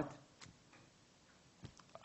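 Quiet room tone with a few faint, isolated clicks: one about half a second in and two close together near the end.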